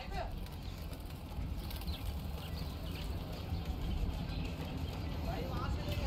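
Steady low outdoor rumble with faint, short chirps from a cage of small parakeets, and a murmur of voices in the background.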